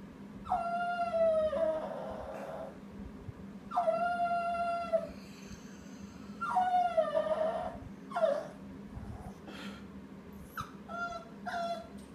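Small dog howling and whining in long, drawn-out cries, three of about a second each, then a shorter one and a couple of brief yelps near the end: the dog is complaining about a lost ball that it can't reach.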